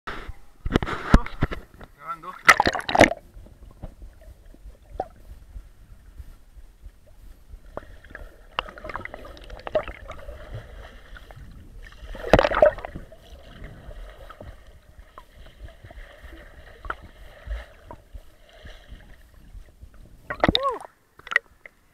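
Water splashing and sloshing around a camera held at and below the surface of a lake, with muffled underwater sound between the splashes. Loud splashes come about a second in, around three seconds in, and again about twelve seconds in as a swimmer strokes past.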